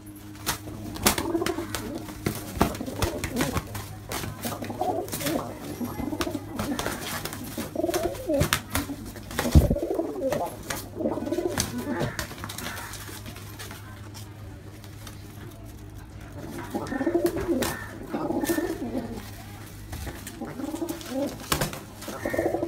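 Domestic pigeons fighting: repeated cooing, with sharp wing slaps and flapping mixed in, and a short lull a little after the middle before the cooing picks up again.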